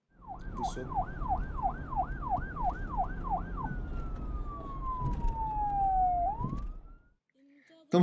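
A siren sound effect: a fast rising-and-falling whoop, about three swings a second, then one long falling tone that swoops sharply upward at the end, over a low rumble. It cuts off about seven seconds in.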